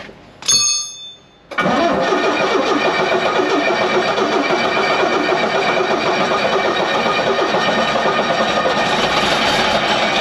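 Starter motor cranking the Bristol VR bus's diesel engine, a loud, steady churn lasting about eight seconds without the engine catching, after a brief high squeal just before it.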